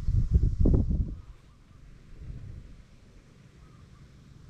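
Wind buffeting the microphone in loud, low gusts for about the first second, then dropping to a faint, steady outdoor background.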